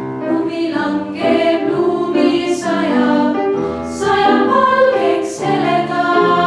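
Girls' choir singing in harmony, several voices holding and moving between notes, with the hiss of sung 's' consonants now and then.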